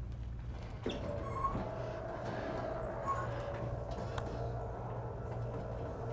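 Quiet room tone with a steady low hum. A thin steady whine starts about a second in, and a few faint clicks are scattered through it.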